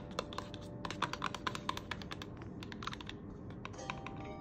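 Long fingernails tapping and clicking on a cardboard skincare box as it is handled: a quick, irregular run of sharp taps, busiest in the middle.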